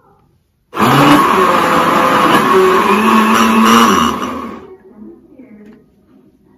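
Electric countertop blender motor running with a load of papaya, blending juice: it starts abruptly about a second in, runs steadily for about three seconds, then winds down as it is switched off.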